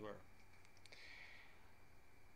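Near silence: faint room tone and hiss, with the tail of a spoken word at the very start.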